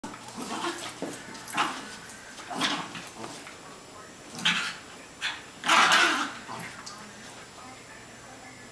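Two small terrier dogs play-fighting, vocalising in short bursts about once a second, the longest and loudest a little before six seconds in.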